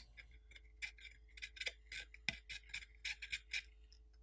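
Faint scratching and ticking of a Mohs hardness test pick's point worked against a stainless steel vapor chamber, a string of short scrapes and clicks.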